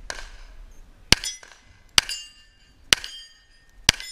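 Four handgun shots about a second apart, each followed by the short ringing of a struck steel target.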